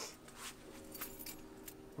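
Faint metallic jingling of small metal objects, such as keys or jewellery, over a faint steady hum.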